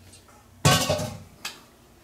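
Stainless steel mixing bowl set down on a stone countertop: a sudden metallic clank with a brief ring, then a lighter knock about a second later.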